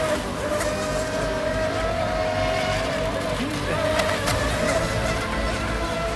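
Electric RC racing boats running at speed: a steady high motor whine that wavers slightly in pitch, over a low, even rumble.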